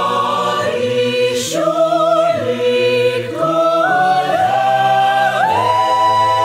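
An a cappella vocal ensemble singing a Christmas carol in close harmony, the chords changing every second or so. Near the end a high female voice holds a long note over the group.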